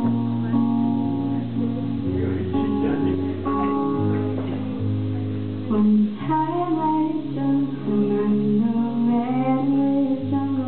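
Live music: an acoustic guitar strummed in steady chords, with a woman's singing voice coming in about six seconds in.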